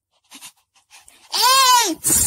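A child's voice giving one drawn-out, bleat-like cry that rises and then falls in pitch, about a second and a half in, after a few faint soft clicks.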